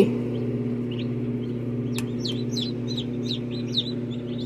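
Newly hatched chicks peeping inside an egg incubator: a few faint peeps at first, then a run of short, high, falling peeps from about two seconds in, over the incubator's steady hum. A single click about two seconds in.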